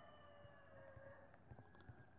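Near silence: room tone, with a few faint ticks near the end.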